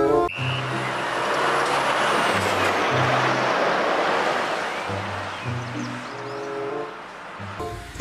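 A car-transporter truck rolling past on a road, a steady rush of road noise that cuts off suddenly near the end, over background music with a repeating bass line.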